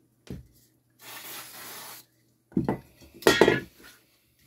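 Workbench handling noises: a knock, about a second of hissing, then a few knocks and a loud clatter with a slight metallic ring as an aerosol can is picked up.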